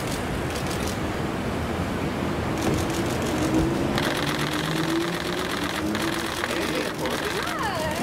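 Street noise with traffic and indistinct voices, and a fast, even ticking that comes in about halfway through.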